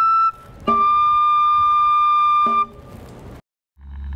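Basque txistu (three-holed pipe) played with a tabor drum: a short high note, then a long note held for about two seconds, with a drum stroke where each note starts. Near the end it breaks off into a moment of silence, and different music with a low drone begins.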